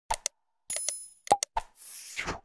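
User-interface sound effects for an animated like-and-subscribe end card: quick mouse clicks and pops, a short bell-like ring in the middle, further clicks, then a whoosh near the end.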